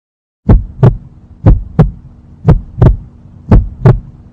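Heartbeat sound effect: deep double thumps, four beats about a second apart, starting about half a second in over a faint steady hum.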